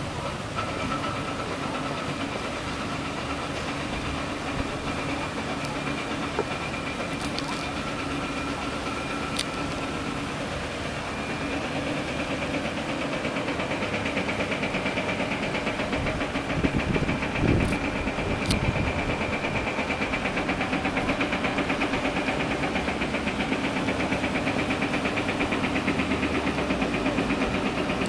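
Diesel construction machinery running steadily, a hum with a few held higher tones. About halfway through it grows louder and takes on a fast, even pulsing, with a brief louder rumble soon after and a few sharp clicks.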